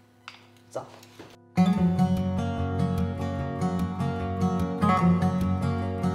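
Background music that starts abruptly about a second and a half in, after a short quiet stretch with a single spoken word.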